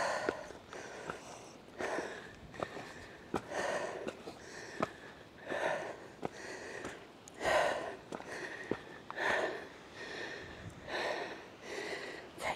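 A person breathing hard from the exertion of climbing a steep rock slope, one loud breath about every two seconds. Small sharp ticks between the breaths are footsteps on the rock.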